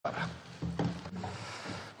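Room noise before a speech: a few soft knocks and rustles over a low, steady murmur.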